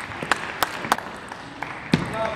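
Celluloid-type table tennis ball clicking off bats and table in a rally: three sharp clicks about a third of a second apart, then a louder knock near the end, over faint hall noise.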